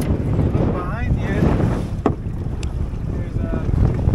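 Wind buffeting the microphone on a boat at sea, a steady low rumble, with a few sharp clicks and a brief voice about a second in.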